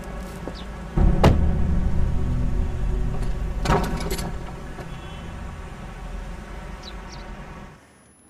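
Car doors shutting with a thump about a second in and again a few seconds later, over a low vehicle engine rumble that fades away toward the end.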